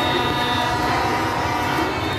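Several horns held in long, steady tones over the dense noise of a large crowd in the street.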